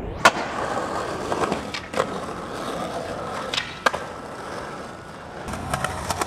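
Skateboard landing with a sharp smack on concrete just after it starts, then its wheels rolling across pavement, with a few sharp clacks of the board along the way.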